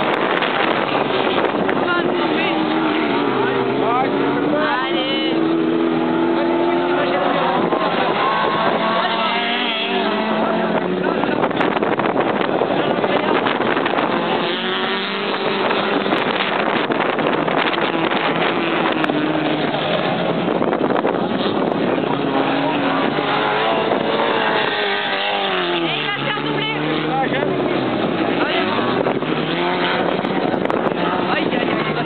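Autocross race cars' engines running hard on a dirt track, their pitch rising and falling again and again as they accelerate and lift off through the bends.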